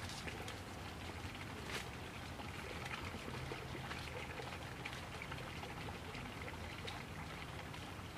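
Water trickling along a small irrigation channel, a steady running sound with faint scattered ticks.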